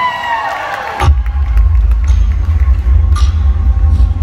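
Crowd cheering and whooping, then about a second in a loud, deep bass rumble from an intro video's soundtrack starts over the sound system and drowns out the crowd.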